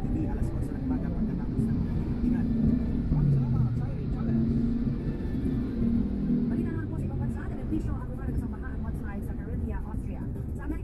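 Low, steady road and engine rumble of a car moving slowly in traffic, heard from inside the cabin, with a voice talking over it.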